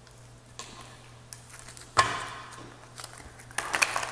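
A deck of tarot-style cards handled and shuffled by hand on a hard countertop: soft handling at first, a sharp slap of the cards about halfway through, then a run of quick crisp card flicks near the end.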